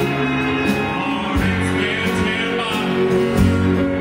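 Live country band playing a slow song, with guitar and a wavering lead melody line over it.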